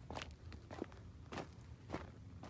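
Footsteps on loose, flat shale stones, about four even steps in two seconds, each a short crunch of rock underfoot.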